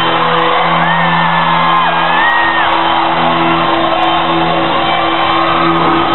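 A rock band playing live, with a steady, droning low end under a high wailing vocal that is held for about two seconds near the start.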